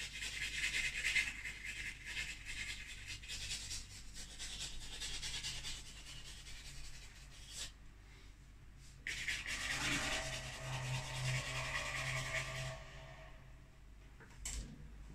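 A pastel stick rubbing and scratching across a canvas in repeated strokes, in two spells with a short pause a little past the middle.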